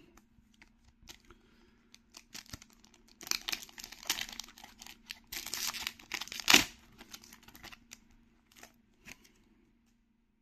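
Metallised plastic wrapper of a Naruto Kayou trading-card booster pack being torn open by hand. The wrapper crinkles and tears for a few seconds, with one sharp rip about six and a half seconds in, then a few light crinkles.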